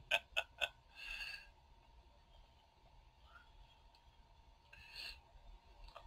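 A man's soft chuckles: a few short breathy laughs in the first second, another about a second in and a last one near the end, over a quiet recording with a faint steady tone.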